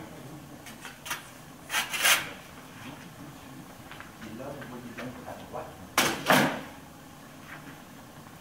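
A stainless steel chimney cowl with a hinged hatch being handled and set down on a table: a pair of short metallic knocks about two seconds in, a louder pair about six seconds in, and faint clicks between.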